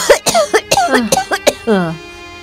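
A woman's fit of harsh coughing, several short coughs in quick succession, ending in a falling groan near the end. The coughing comes from a sick person. Background music plays underneath.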